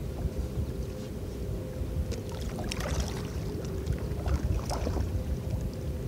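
Water splashing and lapping against the plastic hull of a moving fishing kayak, in irregular bursts a couple of seconds in and again near the end. A low wind rumble on the microphone runs underneath, with a faint steady hum.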